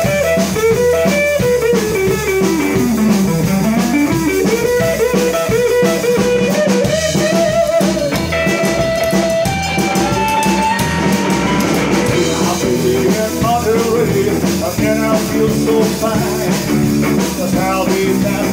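Live rock and roll trio playing an instrumental passage: hollow-body electric guitar taking a lead line over upright double bass and drum kit. The guitar line slides down and back up a couple of seconds in.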